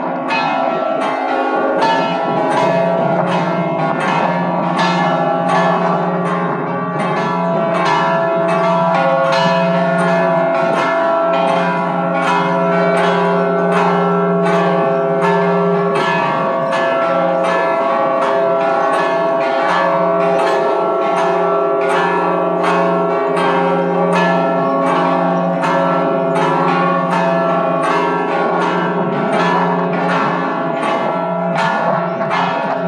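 Full peal of five swinging church bells (tuned F#, E, C#, C and C#), the clappers striking about two times a second in a continuous rhythm while the bell tones ring on and blend.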